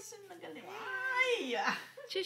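A baby's high-pitched cooing squeals, wavering up and down in pitch.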